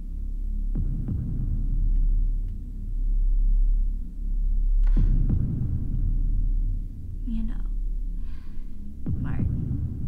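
Horror film score: a low throbbing drone that swells and fades, struck by deep hits about a second in, at the midpoint and near the end. Faint whispers come in after about seven seconds.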